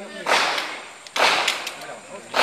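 Two handgun shots about a second apart, each followed by a long echo.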